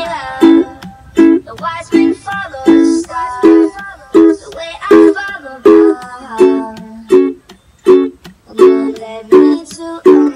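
A Bobson ukulele strummed in a steady rhythm through the chords A, E, F#m and D. A chord sounds about every 0.7 s, with percussive taps on the strings between the strums.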